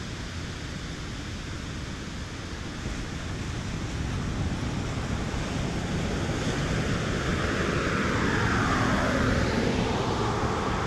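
A car driving along the road toward the recorder, its tyre and engine noise growing steadily louder over several seconds. Near the end, as it comes close, the sound slides down in pitch.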